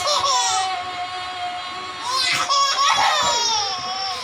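A baby and a young boy laughing: a long high-pitched held squeal of laughter in the first second or so, then a louder burst of broken laughter about two seconds in.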